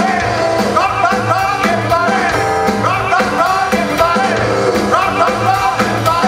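Live rockabilly band playing: a male singer over electric guitar and upright double bass, with a steady beat.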